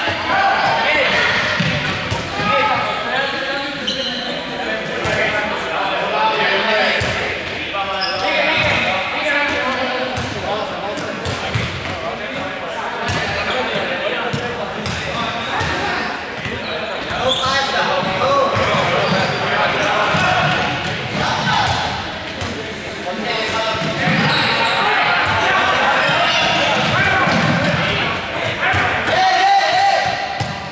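Many players talking and calling out at once, with balls bouncing and thudding on the hard floor of a large sports hall, the whole mix echoing in the hall.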